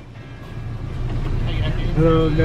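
Low rumble of an idling car at a drive-thru window, growing steadily louder, with a faint voice starting near the end.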